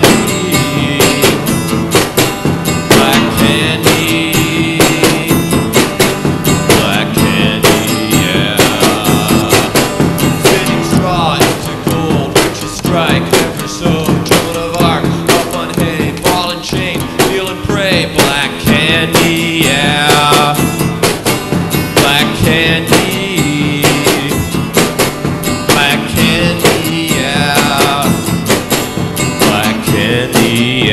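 Live band music: a drum beat on a small stand-up kit of floor tom and snare, with electric guitar and a man singing into a microphone at times.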